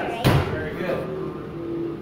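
A pitched softball hitting a catcher's mitt: one sharp pop about a quarter second in.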